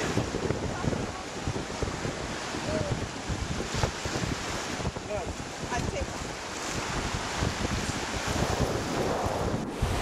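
Wind buffeting the microphone over the steady wash of surf on the shore, in uneven gusts.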